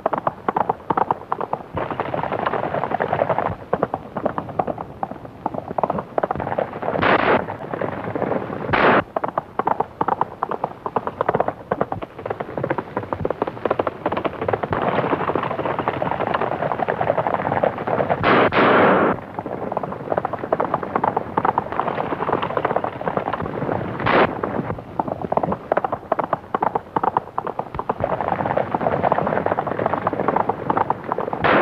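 A group of horses galloping hard, a dense continuous rattle of hoofbeats on a dirt road. Four louder sharp cracks cut through, about 7 and 9 seconds in, again near 18 seconds and near 24 seconds.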